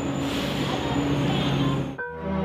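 Street traffic: a large road vehicle's engine running steadily, a low hum with a broad hiss over it.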